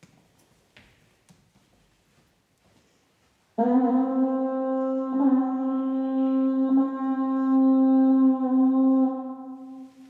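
Alphorn sounding one long, steady held note with two brief breaks, starting about three and a half seconds in and fading out near the end.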